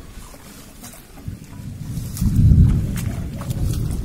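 Rolling thunder: a low rumble that swells about a second in, is loudest near the middle, and slowly tapers off.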